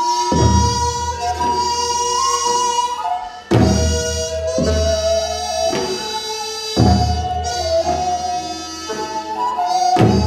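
Korean traditional court music accompanying a court dance: wind instruments hold long, slowly bending melody notes, with a loud drum stroke about every three seconds.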